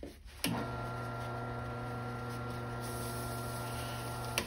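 Wood lathe switched on with a click about half a second in, then its motor running with a steady hum as it spins a pen blank on the mandrel.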